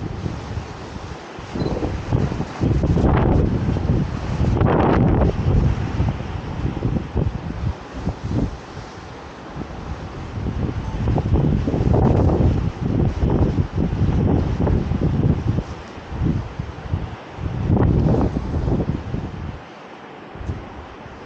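Strong gusty wind buffeting a microphone in a furry windscreen: a low rumble that swells and falls in gusts every few seconds.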